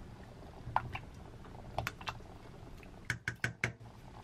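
Light clicks and taps of a wooden spoon and rice cakes against a stainless-steel saucepan of broth: a few scattered ones, then a quick run of about five near the end.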